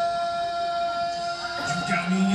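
A cappella singing: one voice holds a single long high note steadily over soft backing voices, with lower voices coming in near the end.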